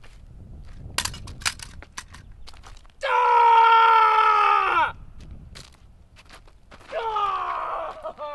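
A man screaming: a loud, wordless yell of about two seconds that drops in pitch as it ends, then a second, shorter yell near the end that also falls away. Before the first yell come a few sharp crunching steps.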